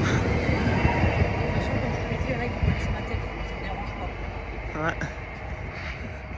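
Francilien (Z 50000) electric multiple unit moving away along the platform, its running noise fading steadily as it leaves.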